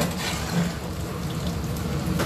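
Tofu cubes sizzling steadily as they deep-fry in hot oil in a stainless steel wok.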